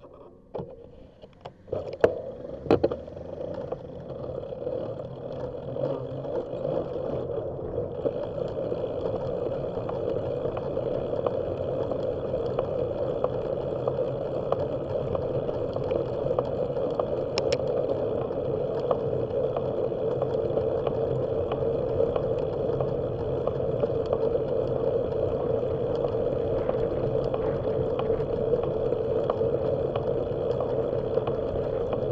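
A bicycle pulling away from a stop, with a few sharp clicks and knocks in the first seconds. Then wind and tyre noise on the bike-mounted camera's microphone rise as it gathers speed and settle into a steady rush.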